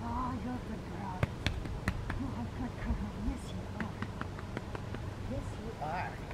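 A quiet, low voice murmuring, with a scattered run of sharp clicks and taps.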